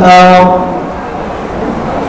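A young man's voice holding one long, steady note at the end of a phrase of melodic Quran recitation (tilawat); it stops about half a second in. A pause with steady background noise follows.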